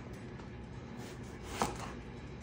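Chef's knife slicing through an eggplant onto a wooden cutting board: quiet cuts, with one clearer knock of the blade on the board about one and a half seconds in.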